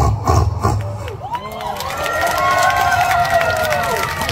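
Vocal beatboxing with a fast, even bass beat that stops about a second in. An audience then cheers and shouts, with many voices overlapping.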